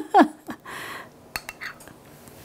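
A metal scoop and spoon against a cut-glass bowl: a short scrape about half a second in, then three light clinks in quick succession.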